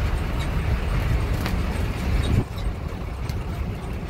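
Open-sided game-drive vehicle driving on a dirt track, heard from inside the open cab: a steady low rumble of engine and tyres on gravel, with a single sharp knock about a second and a half in. The rumble gets a little quieter just past halfway.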